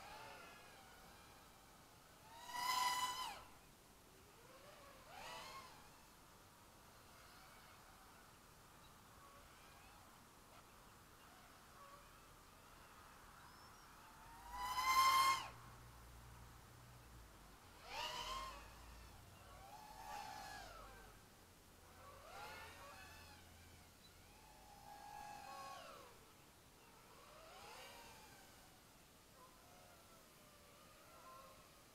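Small FPV quadcopter's motors and propellers flying at a distance, whining up and falling away in short throttle bursts about every two to three seconds. The two loudest bursts come about three seconds in and near the middle.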